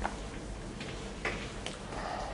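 A few short, sharp taps and clicks, four or so across two seconds, from writing on a board, over a steady low room hum.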